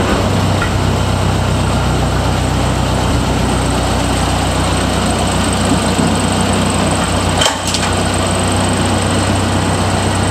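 1932 Ford Model B truck's four-cylinder engine running at a steady idle. About seven and a half seconds in there is a brief dip in the sound and a sharp click.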